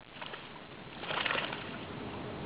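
Creek water splashing and sloshing, with a louder splash a little past a second in.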